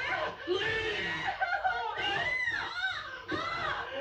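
Men screaming and yelling in a violent struggle, a run of short cries whose pitch rises and falls in arches.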